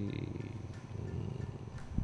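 A man's voice trailing off into a faint, low, creaky vocal-fry drone as he pauses to think in mid-sentence, close to the microphone.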